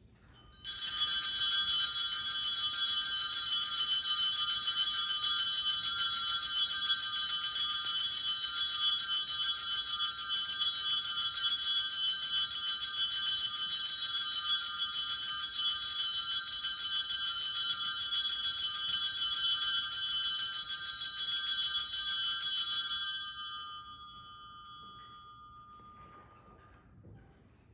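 Altar bells shaken continuously while the priest blesses the people with the monstrance at Benediction of the Blessed Sacrament. It is a steady, bright jangling ring of several high bell tones that starts about a second in, stops about 23 seconds in, and briefly rings out.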